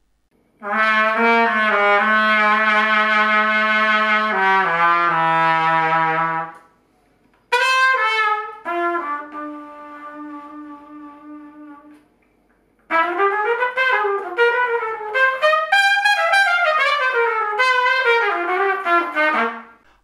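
Solo trumpet playing three phrases: first long, low held notes that step downward, then a single note that starts loud and fades to a soft held tone, then a quick flowing run of notes rising and falling. Short quiet gaps separate the phrases.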